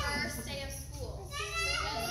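Young children's voices, several at once, with a steady low hum underneath.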